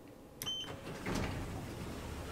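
Floor button on a Schindler 3300 MRL elevator's car panel pressed: a click and a short high beep about half a second in. About a second in, a steady mechanical rumble and whir starts, the car doors beginning to slide shut.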